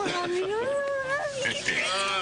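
Excited cries of delight from several people: drawn-out gliding 'oh' sounds, with a higher-pitched squeal coming in near the end.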